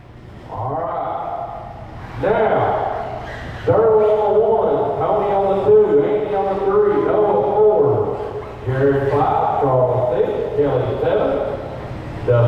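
A man's voice speaking in long, drawn-out phrases, with no words clear enough to make out.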